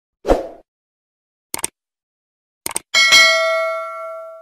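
Subscribe-button animation sound effect: a soft pop, two quick double clicks like a mouse button, then a bright bell ding that rings on and fades over about a second and a half.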